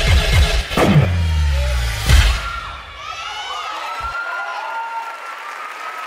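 A hip-hop dance mix with heavy bass plays and ends on a final loud hit about two seconds in. An audience then cheers and shouts.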